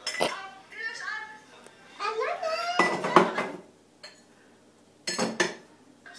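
Crockery and glassware clinking: a few sharp clinks near the start, around the middle and near the end, between stretches of a high-pitched voice whose pitch slides up and down.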